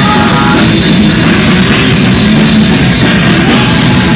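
Heavy metal band playing live and loud: distorted electric guitars and bass over dense, driving drumming on a full drum kit.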